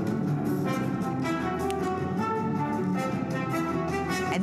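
Orchestral music from the start of the Bose demonstration CD, with sustained brass-like notes, played through the speakers of a Bose Wave Music System IV.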